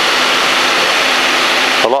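Steady rush of wind and engine noise from a high-wing light aircraft in cruise, picked up by a camera mounted outside on the wing strut. A voice starts near the end, as the rush suddenly drops away.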